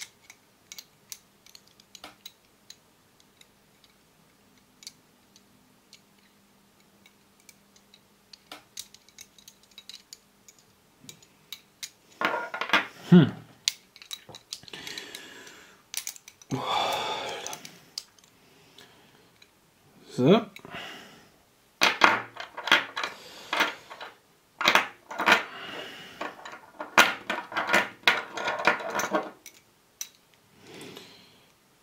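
Cast metal puzzle pieces of a Hanayama Cast Marble clicking and scraping against each other as they are turned and slid in the hands. There are only scattered small clicks at first. From about twelve seconds in come dense runs of metal clinking and rattling.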